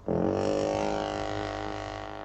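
A single long, low, buzzy note that rises briefly in pitch at the start, holds and slowly fades, then cuts off abruptly.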